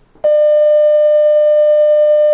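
Loud, steady broadcast test tone played with a colour-bars test card, starting about a quarter second in and held at one pitch. It is the standard off-air signal for technical difficulties.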